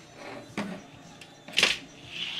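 Handling noise as a circuit board with ribbon cables is lifted out of its plastic front-panel housing: a soft knock about half a second in, then one sharp clack about a second and a half in.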